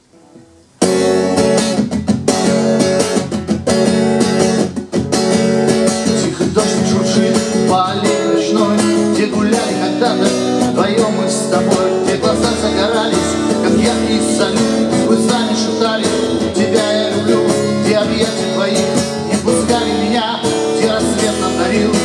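Acoustic guitar strummed in a steady rhythm, starting abruptly about a second in: the instrumental introduction to a song.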